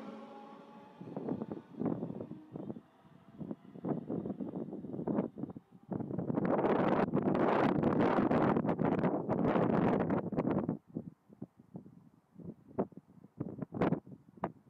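Wind buffeting the microphone in irregular gusts, loudest and unbroken from about six to ten and a half seconds in. Under the first gusts, the electric whine of a departing S-Bahn train fades away in the first few seconds.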